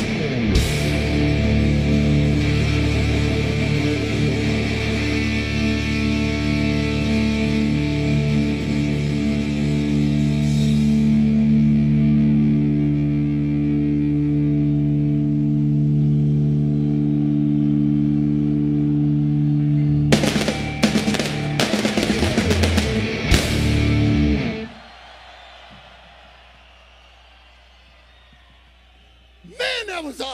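Live hard-rock band with electric guitars, bass and drums holding a long sustained final chord. It then ends with a few sharp band hits and cuts off suddenly, leaving the last few seconds much quieter.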